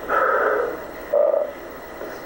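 A man's voice on an old, muffled audio-tape recording asking a short question in two quick bursts: "Why are you crying?"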